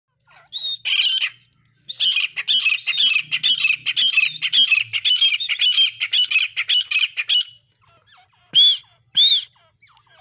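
Female grey francolin (desi teetar) calling: a short call, then a fast run of shrill repeated notes for about five seconds, then two separate loud single notes near the end.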